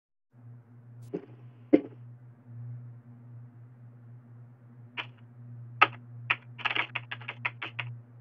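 Computer keyboard typing: a few separate key clicks, then a quick run of keystrokes near the end, over a steady low electrical hum.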